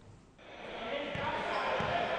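Basketball game sound in a hall fading in about half a second in: crowd noise with a ball bouncing on the court.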